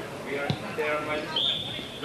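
A football kicked hard upfield, a single thud about half a second in. About a second later the referee's whistle starts one long, steady blast: the half-time whistle.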